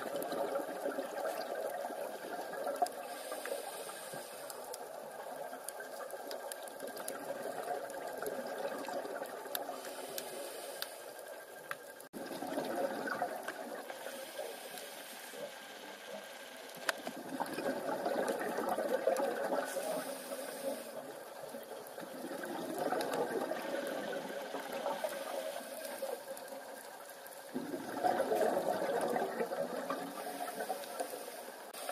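A scuba diver breathing through a regulator underwater: a bubbling rush of exhaled bubbles swells every five seconds or so, with quieter spells between for the inhalations.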